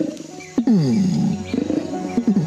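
Adult male Bornean orangutan's long call: a series of deep, pitched pulses, each falling steeply in pitch, with background music under it.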